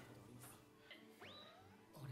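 Near silence: faint audio from the anime episode, with one brief thin tone about a second in that rises sharply and then holds high.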